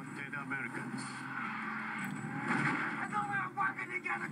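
Action-movie trailer audio from a VHS tape, heard through a television speaker and re-recorded: a dense mix of voices, music and action sound effects, with little bass. It swells louder toward the end.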